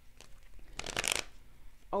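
Tarot deck being handled and shuffled: a short riffling rustle of cards about halfway through, with a few faint card ticks before it.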